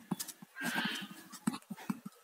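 Pen writing on paper: faint scratching with small taps and ticks as a word is written out.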